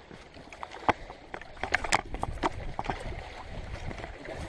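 Sneakers scuffing and tapping on lakeshore boulders as someone climbs over them: a run of short sharp clicks, most of them bunched in the middle, over a steady wash of lapping water and wind on the microphone.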